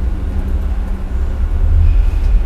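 A loud, steady low rumble, with a faint steady hum above it.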